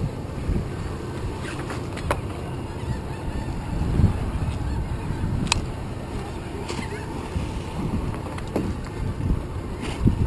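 Wind buffeting the microphone and water moving around a small boat, with seabirds calling a few times over it and a couple of short sharp clicks.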